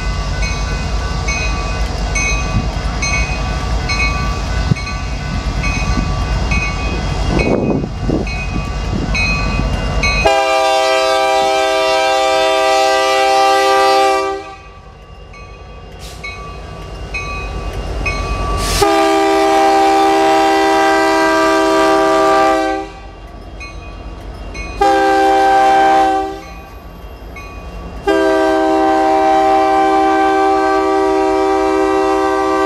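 Diesel locomotives approaching with a heavy low rumble and a bell ringing steadily, then the lead BNSF SD70MAC's air horn sounds the grade-crossing signal: two long blasts, a short one, and a final long one.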